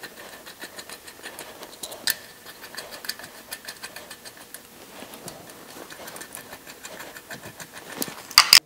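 Steel studs being spun by hand into the threaded turbo flange of a cast exhaust manifold: a steady run of quick, light metallic clicks, with one louder click about two seconds in.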